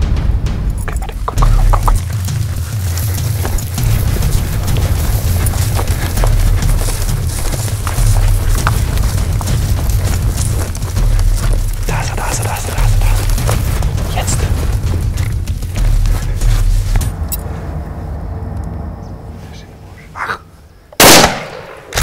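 Background music with a steady low beat that fades out, then a single loud rifle shot about a second before the end.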